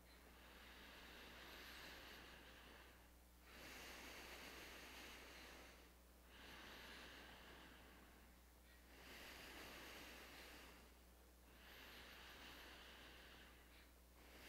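Faint, slow breathing picked up close on a headset microphone: five long breaths in and out, each about two and a half seconds, over a steady low electrical hum.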